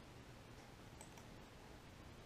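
Near silence: room tone, with a faint computer mouse click about a second in.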